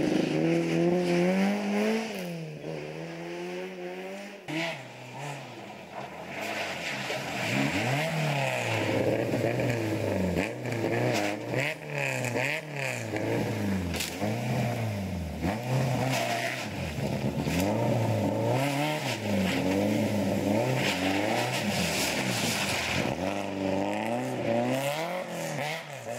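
Rally car engines revving hard through snowy hairpins. The pitch climbs and drops again and again with throttle and gear changes, and it is quieter for a few seconds early on.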